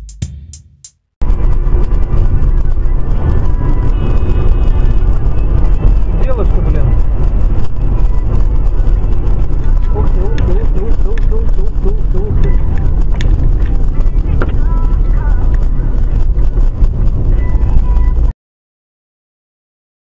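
Loud, distorted dash-cam audio of a moving car: a heavy low rumble, with voices and music from inside the car mixed in. It cuts off suddenly near the end.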